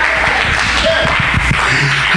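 Church congregation clapping and calling out in response to the preaching, over a steady low sustained tone.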